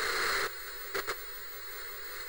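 Television static hiss used as a sound effect. It is louder for the first half second, then drops to a steady lower hiss, with two brief crackles about a second in.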